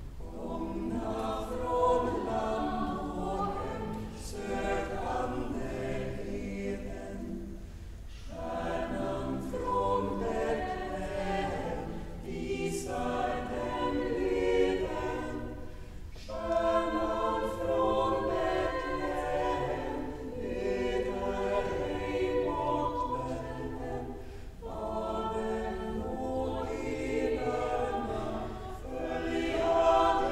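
Girls' choir singing a Lucia song, in long phrases with short breaks between them.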